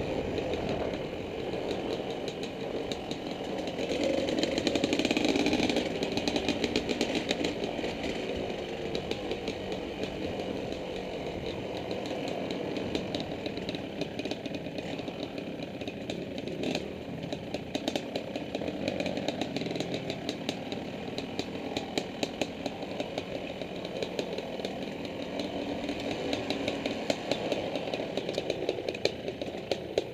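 Dirt bike engine running as the bike rides along a trail, getting louder as it revs up about four seconds in, then settling back. Many short clatters run through it.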